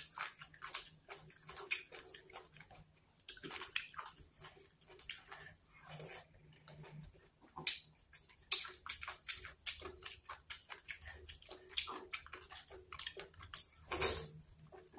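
A person chewing and biting into food held close to the microphone, with many short, irregular mouth clicks.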